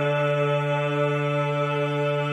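Male vocal ensemble singing fourteenth-century polyphonic Mass music, holding one sustained chord steadily.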